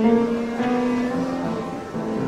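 Grand piano playing, with notes held and left to ring rather than struck in quick succession.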